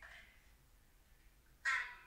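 Quiet, then one short, harsh vocal sound about a second and a half in, like a hoarse cry.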